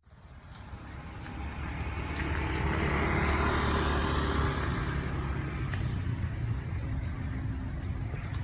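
A low motor rumble, like a road vehicle's engine, that swells over the first few seconds and then holds steady, with a few faint high chirps.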